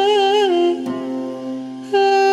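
Background music: a held melodic line with wide vibrato over a steady low drone. It steps down to a lower note about half a second in, goes softer through the middle, and comes back loudly right at the end.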